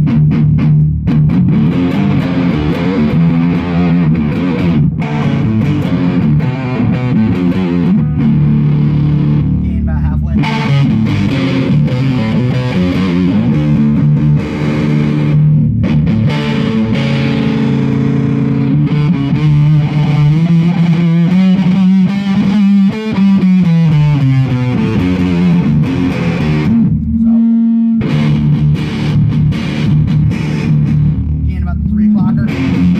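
Electric guitar played through a handmade clone of the Roland Bee Baa fuzz pedal, a Fuzz Face-style fuzz with added filtering, into a clean tube amp: thick, distorted sustained notes and phrases with a few short breaks. About two-thirds in, one note is bent slowly up and back down.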